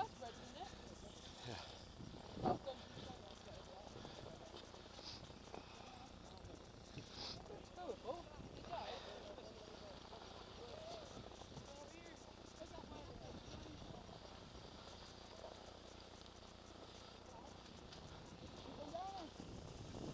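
Skis sliding over packed snow, faint, with a sharp knock about two and a half seconds in.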